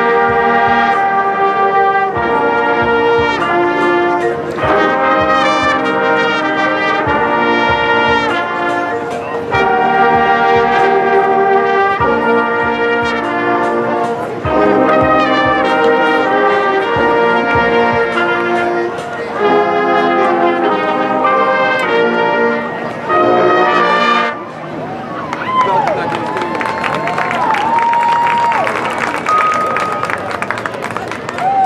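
High school marching band playing: brass chords over drums, in phrases, stopping abruptly about 24 seconds in. After the cut-off comes crowd noise with shouting voices.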